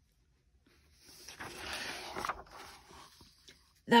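Paper page of a picture book being turned: a soft rustle starting about a second in, trailing off into fainter brushing of the paper.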